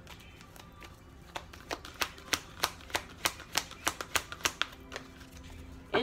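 Tarot cards being shuffled by hand: a run of about a dozen sharp clicks at roughly three a second, starting more than a second in and stopping about a second before the end.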